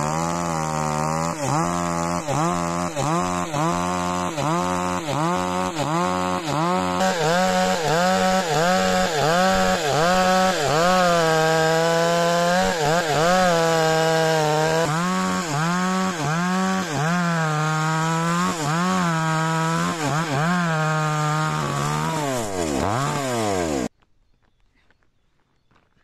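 Two-stroke petrol chainsaw ripping a wooden board lengthwise, its engine pitch dipping under the load of the cut and picking back up over and over. The sound cuts off suddenly near the end.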